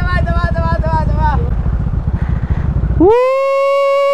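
A motorcycle engine running close by, a dense low rumble, with a drawn-out wavering call over it for the first second or so. About three seconds in, the engine sound cuts off abruptly and a clean, steady held tone takes its place, rising in at its start: a sound added in editing over the cut.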